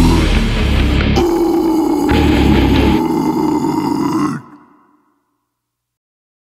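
Closing seconds of a heavy metal track: distorted guitars and drums, then sustained held notes. The highest note bends upward just before the music stops about four and a half seconds in.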